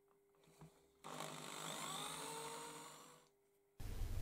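Corded electric drill with a small twist bit boring a hole in an MDF board, faint: the motor spins up about a second in, runs for about two seconds and winds down.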